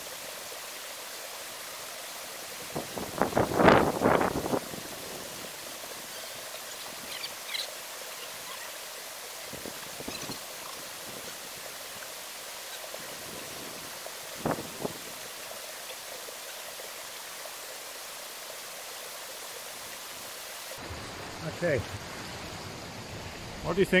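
Steady hissing outdoor background noise. A short loud burst of a man's voice comes about three to four seconds in, and a few brief knocks follow later.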